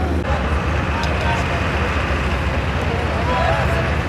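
Voices of several people talking and calling out at a distance, over a steady low rumble.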